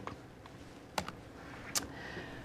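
Two sharp clicks about three-quarters of a second apart, with a faint tick before them: laptop key presses advancing the presentation slides.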